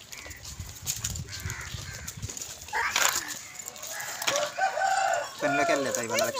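A rooster crowing, with voices nearby.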